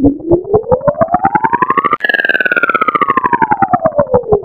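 Pepsi logo-animation sound effect, electronically processed, reversed and slowed: a pulsing pitched tone that glides up, jumps higher about halfway through, then glides back down. The pulses speed up toward the jump and slow again afterwards, giving a siren-like sound.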